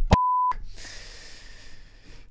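A short, steady 1 kHz censor-style bleep tone lasting about a third of a second, cut in with total silence around it, followed by a long, soft, breathy exhale.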